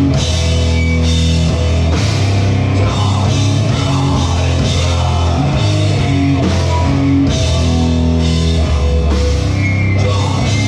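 High-speed punk band playing live and loud: electric guitars, bass and a drum kit, with sustained low chords changing every second or so over steady drumming.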